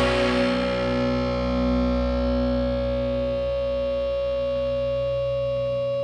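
Music: the last chord of a rock song held and ringing out on distorted electric guitar. Its brightness fades over the first second or two while the notes sustain, and the lowest notes cut off just before the end.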